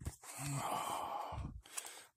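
A man's long breathy sigh. It opens with a brief voiced sound and trails off in breath, followed near the end by a few soft rustles of paper pages being fanned.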